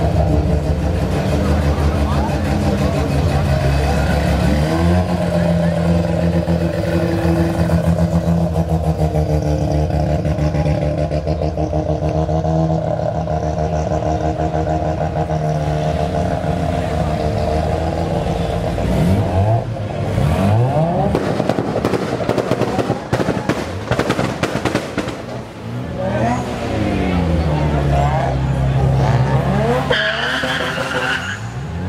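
Modified Japanese sports car engines pulling away at low speed, one after another: a steady exhaust note held at low revs for most of the time, then revs rising and falling sharply about two-thirds of the way through and again near the end.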